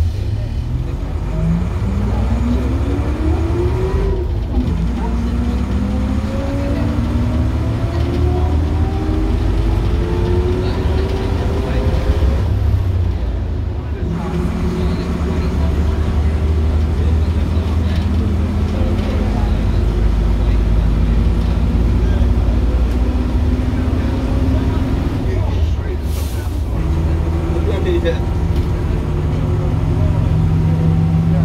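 Preserved Ailsa double-decker bus's engine and drivetrain heard from inside the saloon as the bus pulls away and accelerates. A deep, steady engine drone runs under a whine that climbs in pitch with speed and drops back at each gear change, about four seconds in, again around fourteen seconds and near twenty-six seconds: the whine the title calls "rocket noises".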